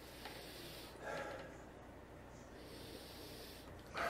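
A man sniffing a glass of hazy double IPA to take in its aroma: several soft, breathy inhalations through the nose with the glass held at his face.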